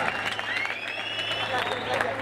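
Large concert crowd clapping and cheering, with long shouted cries rising over dense applause.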